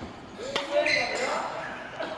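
Faint background voices in a large echoing sports hall, one voice rising and falling about half a second in, with no clear racket strike.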